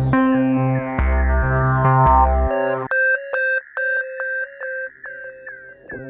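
Background music: a bass line under sustained chords, the bass dropping out about two and a half seconds in and leaving sparse, repeated high notes.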